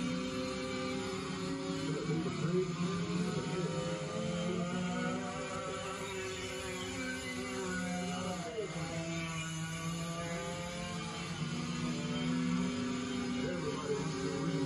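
Small go-kart engines racing past, their pitch rising and falling, mixed with background music.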